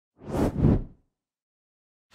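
Whoosh transition sound effect: two quick swells of rushing noise within the first second.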